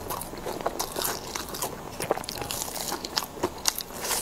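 A person chewing and biting crunchy grilled food close to a clip-on microphone: a quick, irregular run of crisp crunches and wet mouth clicks, several a second.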